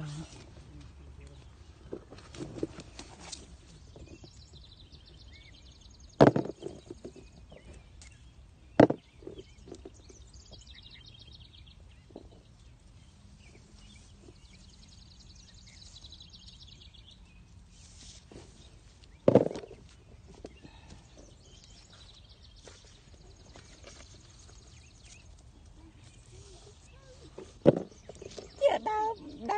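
Quiet outdoor background with faint high trilling now and then, broken by three sharp knocks about six, nine and nineteen seconds in.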